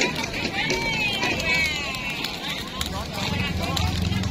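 Crackling and snapping of a large open wood fire (a burning cremation pyre) under people's voices, with a low engine hum coming in near the end.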